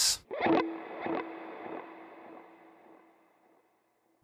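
Electric guitar played through a dotted-eighth delay and a cloud reverb: a few picked notes, then one held note ringing on with repeating echoes and a long washy reverb tail that fades out about three seconds in.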